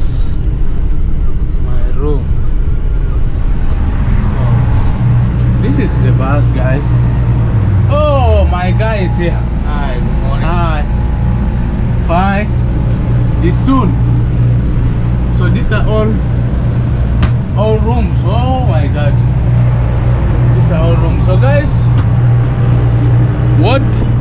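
Steady low drone of a bus engine heard from inside the sleeper cabin, growing stronger about four seconds in, with other passengers talking.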